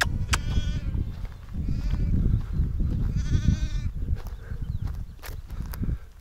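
A newborn lamb bleating: a few high, quavering bleats, the longest about three seconds in.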